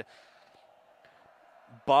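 A pause in the broadcast commentary: near silence with only a faint steady background hum, and a man's voice resuming near the end.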